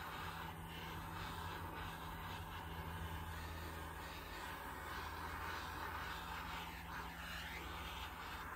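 Small handheld gas torch burning with a steady hiss, swept over wet acrylic pour paint to pop air bubbles in the silver layer.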